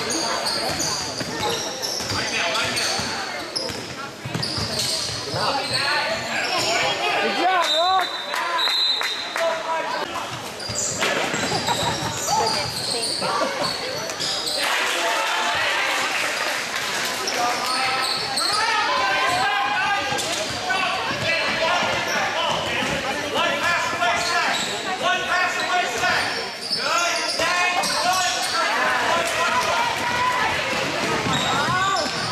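A basketball being dribbled and bounced on a hardwood gym floor during a game, with indistinct shouts and chatter from players and spectators echoing in a large gym.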